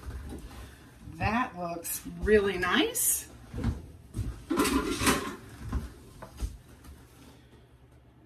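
Several light knocks and clatters of a plastic canning funnel and glass jar being handled on a stone countertop, most of them in the first six or seven seconds, mixed with bursts of indistinct voice.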